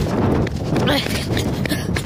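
A person running fast on pavement: quick, repeated footfalls close to a hand-held phone's microphone.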